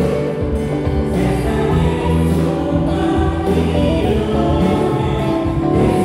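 Live praise band playing a hymn: electric guitars, bass guitar, keyboards and drums, with a group of voices singing along.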